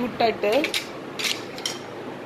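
A few light clicks and taps about a second in, as wooden spoons and small lidded jars are handled on a glass tabletop.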